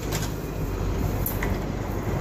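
Large sliding barn door rolling along its overhead roller track: a steady rumble with a few light knocks.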